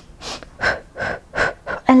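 A woman's short, sharp breaths, about five in an even rhythm of roughly three a second: the percussive breathing of the Pilates hundred, one puff per arm pump.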